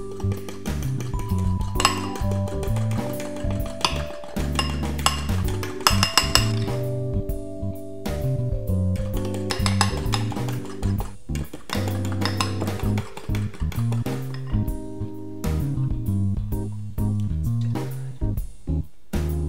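Background music, with a whisk clinking repeatedly against a glass mixing bowl as eggs are beaten by hand.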